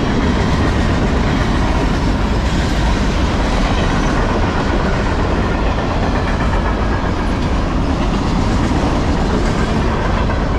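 Freight cars loaded with trash containers rolling past close by: a loud, steady noise of steel wheels running on the rails.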